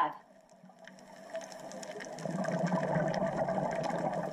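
Underwater sound recorded during a scuba dive: a rushing water noise that builds over the first two seconds and then holds steady, with a low hum and a scatter of faint clicks.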